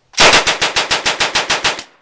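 M3 'Grease Gun' submachine gun from 1944 firing one full-auto burst of .45 ACP, about 14 rounds over less than two seconds. It runs at its slow cyclic rate of roughly eight shots a second.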